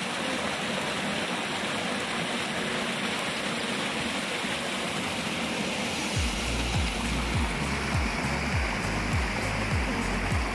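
Steady rushing of flowing stream water. About six seconds in, background music with a deep, regular thudding beat comes in over it.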